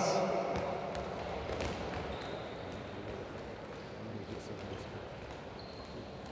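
Handballs bouncing on a sports-hall floor: a few scattered bounces over the hall's steady background noise.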